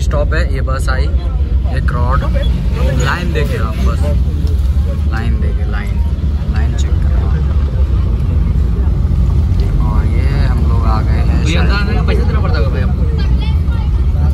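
Steady low engine rumble of a minibus heard from inside as it drives along, with passengers talking over it.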